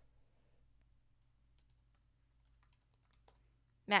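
A few faint, scattered light clicks of fingers on a keyboard over quiet room hum, and a woman's voice starting right at the end.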